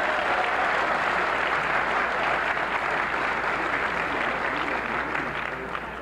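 Audience applauding steadily, the clapping easing off slightly near the end.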